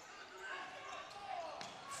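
Faint gymnasium sound of a basketball game in play: a ball being dribbled on the hardwood court, under a low murmur of crowd and players' voices.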